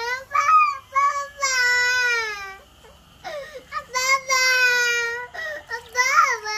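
A young child's high voice in long, drawn-out wavering calls, with a short break about three seconds in.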